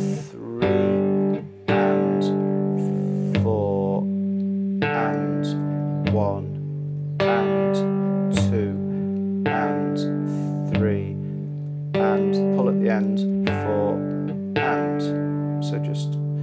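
Three-string cigar box guitar in open G tuning, played fingerstyle in a repeating blues picking pattern. The thumb picks the low string on the beat, between pinches of thumb and fingers and single plucked notes on the two higher strings, the notes left ringing.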